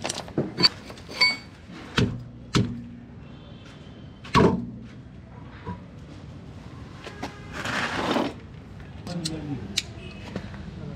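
A Volkswagen alloy road wheel being handled and pulled off a rear hub. There are sharp metal clinks and a few dull knocks, one louder thump about four seconds in, and a scraping rush of about a second near eight seconds.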